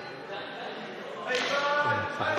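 Hall ambience, then about one and a quarter seconds in a person's voice calls out briefly.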